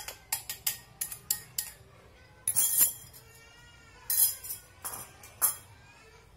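A metal spoon tapping and scraping on a small bowl as flour is knocked out of it into a glass mixing bowl. There is a quick run of light taps in the first two seconds, then a few louder scraping rustles and scattered taps.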